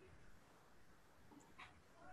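Near silence: faint room tone from a video call, with one brief faint sound about one and a half seconds in.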